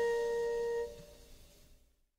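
The last held note of a jazz quintet recording: a steady high tone rings on and stops about a second in, leaving a faint fading tail that dies away to silence at the end of the track.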